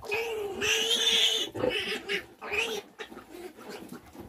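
Three-day-old piglets squealing as they jostle each other for teats on a nursing sow. One long squeal for the first second and a half, then a few shorter squeals that die away near the end.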